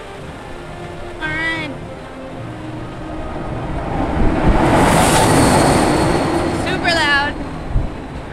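A rush of noise that builds over a few seconds, peaks about five seconds in and then fades, typical of a Test Track ride vehicle speeding past on the outdoor track. A short voice call is heard about a second in and again near the end.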